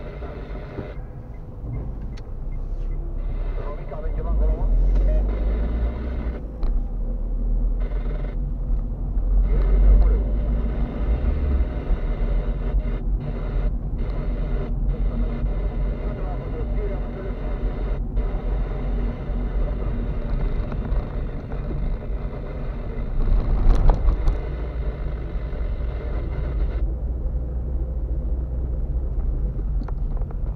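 Car driving in town heard from inside the cabin: a steady low road and engine rumble. There is a louder jolt or thump about three-quarters of the way through.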